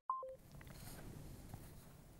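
A short electronic two-note beep from a TV channel ident near the start, a high note dropping to one about an octave lower, then only faint low hiss.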